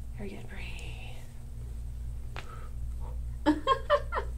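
A steady low hum, with a soft voice-like sound early on and a few short, louder murmured syllables near the end.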